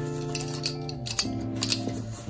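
Background music of held chords, changing to a new chord about a second in, with a few light clicks and taps of pens and art supplies being handled over it.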